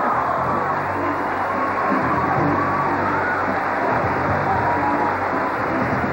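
Game-show music cue for a new-car prize, with held notes playing steadily over a continuous wash of studio-audience cheering.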